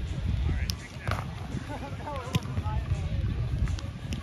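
Beach volleyball in play: a few sharp smacks of hands on the ball, the loudest about two and a half seconds in, over a steady rumble of wind on the microphone and distant voices.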